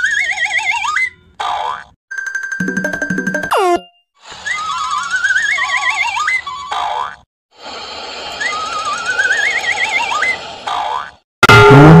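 Cartoon sound effects come in about four bursts with short gaps between them. Each has a wobbling whistle that rises in pitch, along with springy boings.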